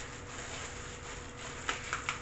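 Quiet kitchen room tone with a faint steady hum, and a couple of light clicks near the end.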